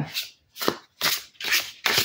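Gilt-edged Baroque Tarot cards being shuffled by hand, making a run of short swishing strokes about two a second, the 'ASMR shuffle sound' of the deck.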